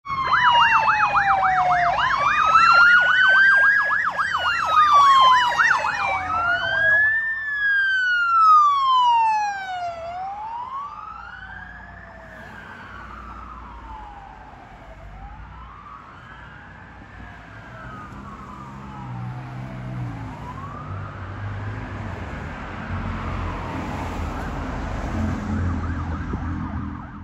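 Emergency vehicle sirens from a responding ambulance and police SUV: a rapid yelp over a slow rising-and-falling wail, loud for the first several seconds. After that only the wail goes on, rising and falling about every two and a half seconds and fading away. A low rumble of passing traffic builds near the end.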